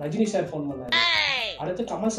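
A cat's meow: one call about a second in, lasting about half a second and falling in pitch.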